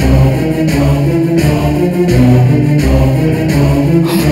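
Dramatic background score: a choir singing over a steady beat.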